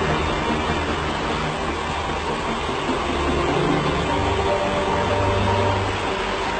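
A steady low rumbling drone with a haze of noise above it, and faint held higher tones coming in about four seconds in.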